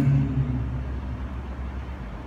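A low, steady rumble of background noise. It opens with a brief murmured vocal sound, like a man's hesitation, lasting about half a second.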